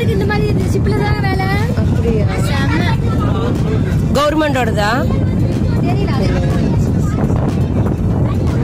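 People's voices over the steady low rumble of a boat's engine.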